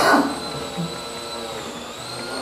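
A short burst of a man's voice right at the start, then a steady high whine over a low hum with no talking.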